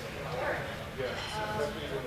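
Indistinct talking from several people, with no clear words.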